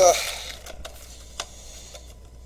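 A man's short "uh", then a quiet room with a low steady hum and one small sharp click about a second and a half in.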